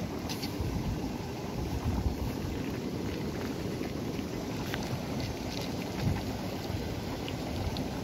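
Boiling geothermal mud pots and steam vents, a steady noisy rumble with a few faint pops, mixed with wind on the microphone.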